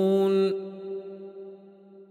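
A male Quran reciter's voice holds a long, steady note in the melodic style of tajwid recitation. The note stops sharply about half a second in, and its echo rings on and fades away, closing the recitation.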